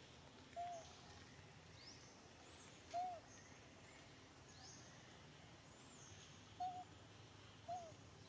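Faint outdoor ambience with a bird giving short, arched whistled notes four times, a few seconds apart. Fainter high chirps and sweeps from other birds or insects run beneath.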